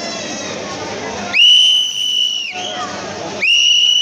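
A whistle blown twice, each a steady, high-pitched blast of about a second, loud over a crowd's chatter.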